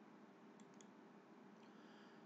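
Near silence: faint room tone with a few faint clicks between about half a second and one second in.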